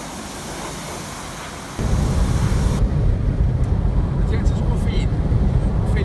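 Pressure-washer lance spraying water, a steady hiss. About two seconds in it cuts to the steady low rumble of a car driving at speed, heard from inside the car.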